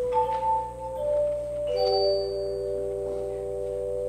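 Slow, quiet instrumental keyboard music of sustained, held chords, with the last chord held and ending right at the close.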